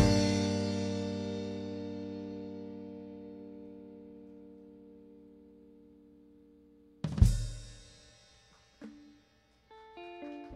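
A live band's closing chord on electric guitar and bass, with drums and cymbals, ringing out and slowly fading for about seven seconds. Then one more loud full-band hit dies away within a second, and a few soft guitar notes follow at the very end.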